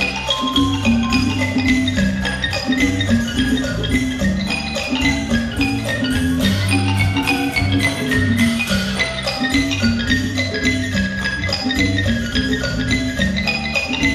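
Live Isan pong lang ensemble playing: fast notes on the wooden pong lang log xylophone over percussion and a repeating low line.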